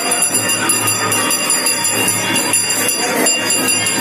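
Temple bells rung continuously during an aarti, a dense, unbroken jangle of ringing.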